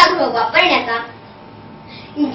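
A girl speaking, then about a second of pause with only faint room tone.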